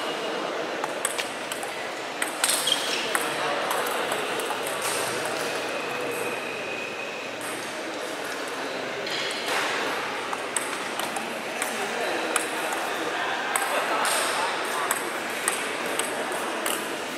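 Table tennis ball clicking sharply off bats and table during rallies, in irregular runs of quick hits. Voices of people talking carry on underneath.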